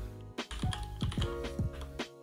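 Typing on a computer keyboard: a run of about ten separate keystrokes, over steady background music.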